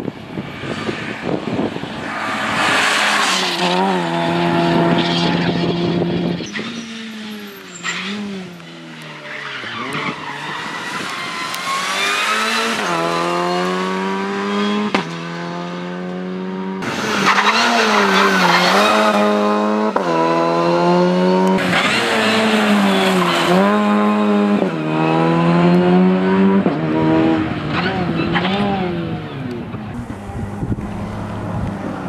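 Opel Adam rally car's engine revving hard through the gears on a special stage. Its pitch climbs and then drops sharply at each shift, over several passes.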